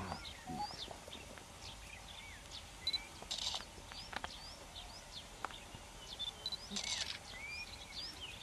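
Birds calling in the background: many short whistled chirps, some rising and some falling in pitch, with two brief harsh bursts about three and a half and seven seconds in.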